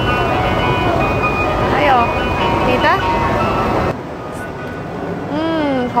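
Ice cream van's engine running steadily at the kerb, with a steady whine over it and brief voices; about four seconds in it gives way to a quieter outdoor background and a woman's drawn-out, pleased 'mm' as she tastes soft-serve.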